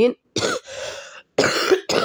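A woman coughing in two rough bouts about a second apart.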